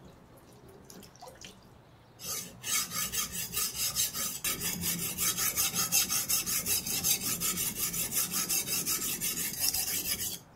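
Knife blade ground back and forth on a wet, coarse diamond sharpening plate in rapid, even scraping strokes, starting about two seconds in and stopping at the very end. This is the first coarse grinding to bring out a new edge. Faint water drips come before it.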